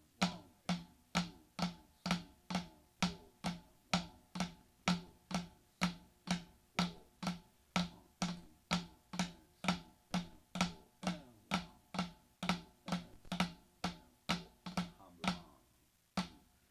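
Drumsticks striking a practice board in slow, even strokes, about two a second, each strike with a short ringing tone. From about twelve seconds in, softer strokes fall between the main ones.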